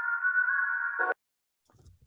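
A beat playing back through a telephone-style EQ (FabFilter Pro-Q 3 'Phone' preset): thin, mid-range-only sound with no bass or top, its ringy middle frequencies boosted for a low-quality phone effect. It cuts off abruptly about a second in as playback stops.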